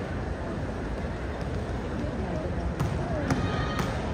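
Volleyballs being struck and bouncing on an indoor court during warm-up passing: a few sharp smacks in the second half, over the steady chatter of an arena crowd.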